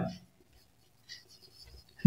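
Marker pen writing on a whiteboard: faint, light scratching strokes as a word is written out.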